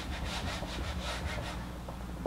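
Whiteboard eraser rubbing back and forth over the board to wipe off marker writing, in quick strokes about four or five a second, which stop about a second and a half in.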